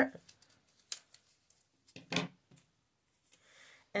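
Scissors snipping through a folded square of old book paper: a few short, separate snips with quiet between them, the loudest about two seconds in.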